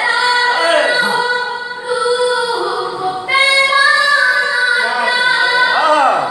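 A boy singing a noha, an unaccompanied lament, into a microphone: long held notes with sliding ornaments, rising louder and higher about three seconds in.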